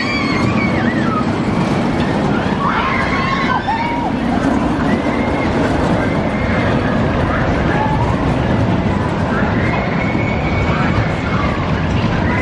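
Bobsled roller coaster train running through its open steel trough, a steady rumble from the wheels, with riders' distant shouts and screams over it a few times.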